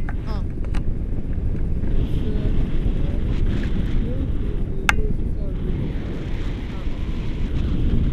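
Wind buffeting the microphone of a selfie-stick camera during a tandem paraglider flight, a steady low rushing noise. There is a single sharp click about five seconds in.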